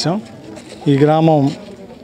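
A man's voice in a pause of speech: one drawn-out vocal sound lasting just over half a second, near the middle, with low background noise before and after.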